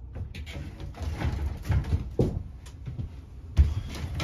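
Loose-tube fiber optic cables being handled and moved: scattered scrapes and knocks of the cable jackets, with one sharp knock a little before the end.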